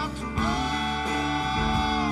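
A rock band playing live on stage, with acoustic guitar strumming and one long held note carried over the band.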